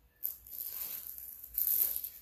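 Rustling and crinkling of packaging being handled and rummaged through, with a louder burst near the end.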